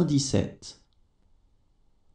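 A voice finishes saying a word, ending under a second in, then near silence with only faint room tone.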